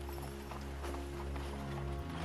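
Sustained low music score over the clip-clop of hooves from horses pulling a carriage.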